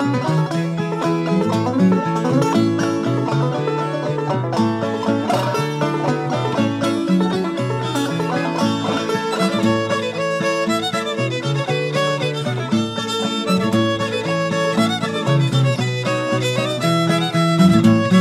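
Old-time string band instrumental break between verses: fiddle and banjo play the tune over guitar accompaniment, with a steady rhythm.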